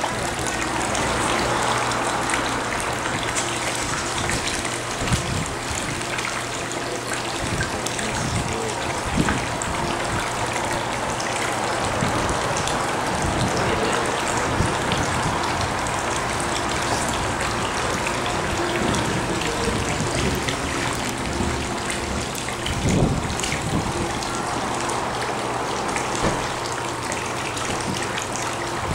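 Steady splashing and trickling of water running into a sea turtle holding tank, with a faint low hum underneath.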